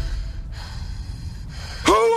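A low rumble fading away, then near the end a sudden loud, pitched gasp from Patrick Star, the cartoon starfish, that carries on past the cut.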